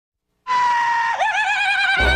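A high-pitched scream that starts about half a second in. It holds one note sliding slightly down, then breaks upward into a higher, warbling cry.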